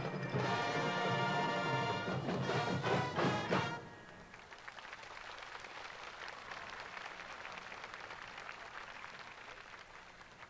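Marching band playing, brass over drums, closing with a run of loud percussion hits and cutting off a little under four seconds in; a quieter crowd applause follows.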